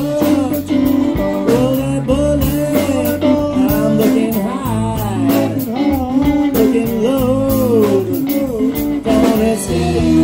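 Live blues-rock band playing an instrumental passage: an electric guitar lead with bent, sliding notes over electric bass and drums.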